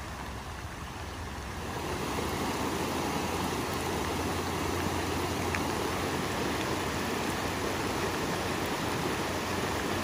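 Muddy floodwater rushing steadily over the ground and along the edge of a paved road, a continuous sound of running water that grows louder about two seconds in.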